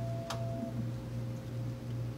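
Fire dispatch radio console during a receiver test: a steady electronic tone cuts off under a second in, over a low hum that pulses unevenly, with a sharp click near the start.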